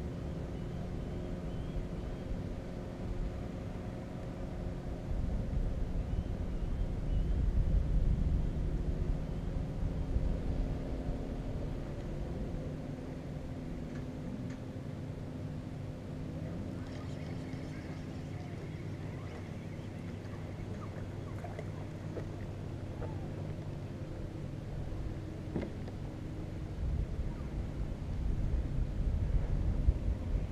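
A steady engine drone, its pitch shifting about halfway through, over a low rumble that swells twice, a few seconds in and near the end.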